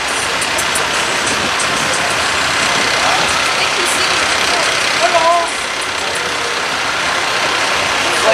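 A steady running noise, most likely a motor vehicle's engine on the street, with faint voices behind it and a brief louder voice about five seconds in.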